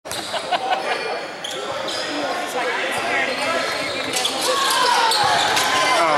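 A basketball bouncing on a hardwood gym floor in a large, echoing hall, with the voices of spectators and players in the background.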